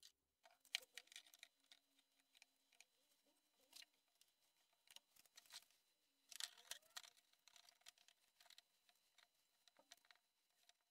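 Faint, irregular clicks, taps and knocks of bar clamps being handled and tightened on glued MDF parts. The loudest knocks come about a second in and again around six and a half seconds.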